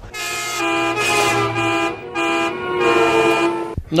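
A vehicle horn sounding in four blasts, long and short, each a steady held tone with a short gap between them.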